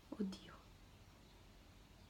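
A short spoken hesitation, "eh", then near silence: room tone.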